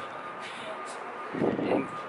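City street background noise with traffic, in a pause between spoken words. A short murmur comes about one and a half seconds in.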